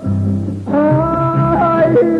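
A woman singing a ranchera over instrumental accompaniment. After a short gap in which only the low accompaniment plays, she holds a long note from under a second in, sliding down near the end.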